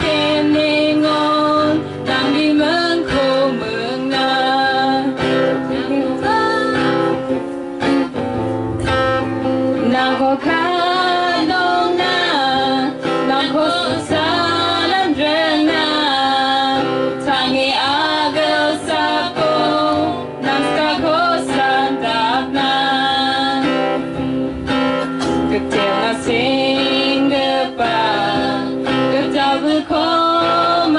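Two women singing a song into microphones, accompanied by an acoustic guitar.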